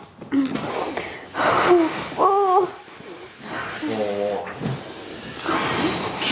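A woman's sharp gasping breaths under deep-tissue pressure on her lower back, with a short wavering cry about two seconds in and a lower voiced groan around four seconds: her reaction to the pain of the massage.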